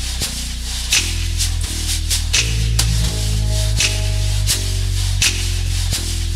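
Instrumental jazz track with a deep bass line stepping to a new note a little more than once a second, a regular bright cymbal-like stroke, and a held higher note in the middle.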